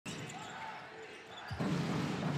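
Basketball being dribbled on a hardwood court over the steady murmur of an arena crowd, with a sharp bounce about one and a half seconds in.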